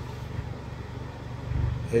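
Honda Accord's engine idling: a steady low hum.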